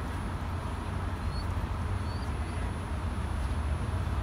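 Steady low rumble of distant road traffic, with two faint short high chirps about a second and a half and two seconds in.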